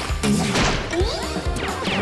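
Cartoon background music with slapstick crash and impact sound effects: several sudden hits, with sliding tones in the second half.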